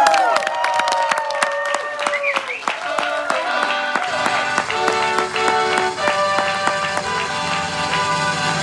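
A singer's long held note sliding down over the first two or three seconds, over scattered audience claps and crowd noise. About four seconds in, backing music with sustained held chords comes in.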